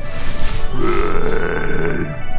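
A person's long, guttural zombie groan, starting under a second in and held steady, over background music.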